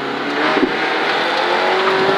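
Mini Cooper rally car's engine pulling hard, heard from inside the cabin. Its loudness builds over the first half second, then holds steady at a high level.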